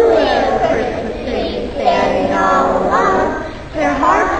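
A group of young children singing together, high voices in short held notes.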